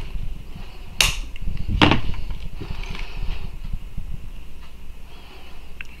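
Flush cutters snipping through a thin stainless steel axle rod: a sharp snap about a second in, followed by a softer click.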